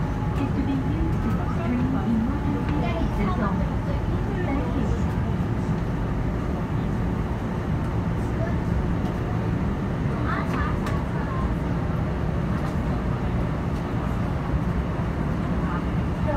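Electric subway train running steadily at speed, a constant low rumble heard from inside the car. Faint voices come through near the start and again about ten seconds in.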